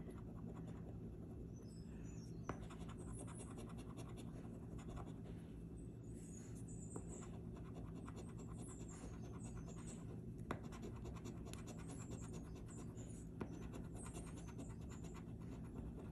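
A metal coin scratching the coating off a scratch-off lottery ticket: faint, quick, continuous scratching strokes with a few sharper clicks along the way.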